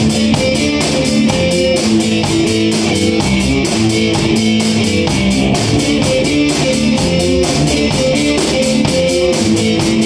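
Live rock band playing: electric guitars over a drum kit keeping a steady beat of about four hits a second.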